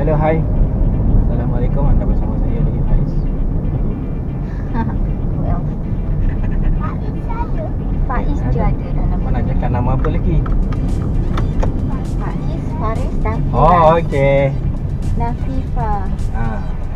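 Car cabin noise while driving: a steady low road and engine rumble inside a moving car, with scattered voices over it, one higher wavering voice standing out about fourteen seconds in.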